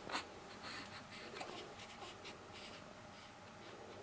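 Soft, scratchy rustling of a cotton baby blanket in short bursts as a newborn moves under it, with a sharper rustle right at the start.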